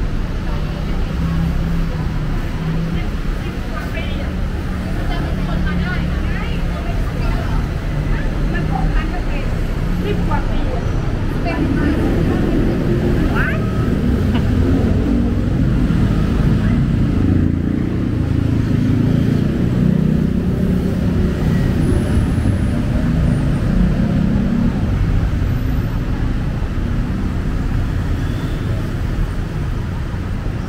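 City street traffic rumbling steadily past a sidewalk, louder in the middle, with snatches of passers-by's voices.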